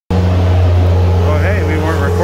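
A skid steer's engine running with a steady low hum.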